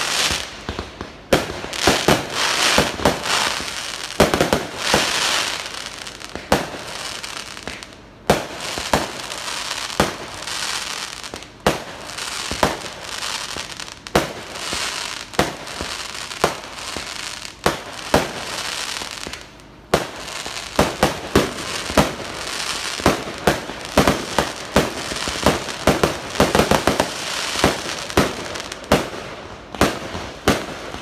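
Fireworks display: aerial shells and crackling stars going off in quick succession, with sharp bangs often several a second over continuous crackling. There are brief lulls about a third and two thirds of the way through.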